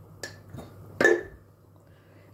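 Steel ladle clinking twice against a stainless-steel pressure cooker while stirring. The first tap comes about a quarter second in, and the louder second comes about a second in and rings briefly.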